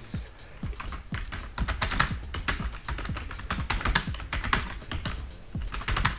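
Typing on a computer keyboard: a run of quick, irregular keystroke clicks as a sentence is typed.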